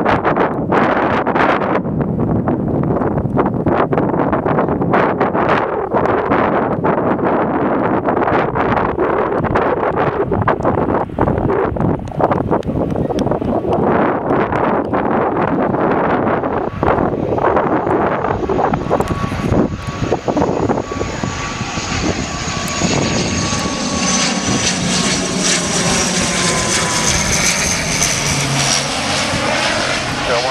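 Wind buffeting the microphone over the drone of an ATR twin-turboprop airliner on final approach. Over the second half the engines and propellers grow louder with a steady high whine as the aircraft comes low overhead, and the whine drops slightly in pitch near the end as it passes.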